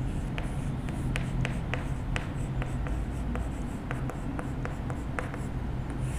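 Chalk writing on a chalkboard: a string of short, sharp taps and light scrapes, irregular at about two to three a second, as letters are chalked on in capitals.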